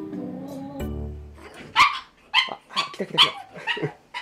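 A pug yapping in short, sharp, high barks, about six in quick succession, starting a little under two seconds in.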